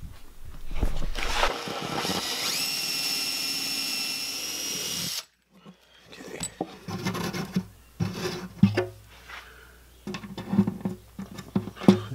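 Power drill running for about four seconds, its whine rising in pitch partway through and then holding steady before it cuts off suddenly, while drilling the bridge pin holes through an acoustic guitar's bridge and top. Afterwards there are light clicks and knocks of handling.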